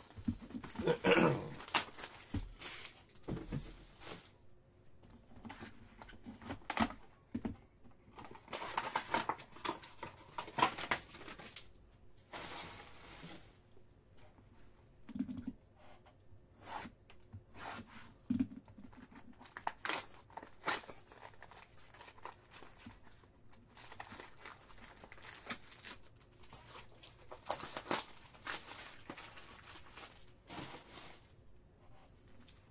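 A cardboard trading-card hobby box being opened and its wrapped card packs handled, with irregular bursts of tearing and crinkling and small clicks. A throat clear about a second and a half in.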